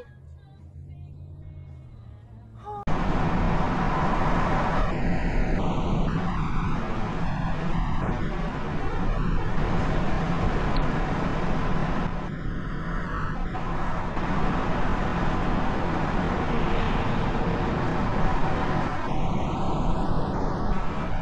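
Loud, steady road and wind noise inside a car moving at highway speed, picked up by its dashcam microphone. It starts abruptly about three seconds in, after a quieter low hum from a slower-moving car.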